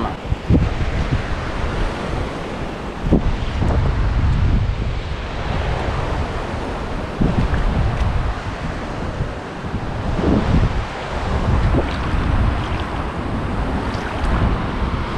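Wind buffeting the camera's microphone in uneven gusts, over a steady wash of surf on a rocky shore, with a few short knocks.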